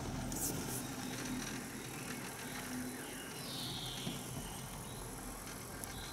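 Faint outdoor ambience heard from a moving chairlift: a steady low hum, with a few faint clicks about half a second in.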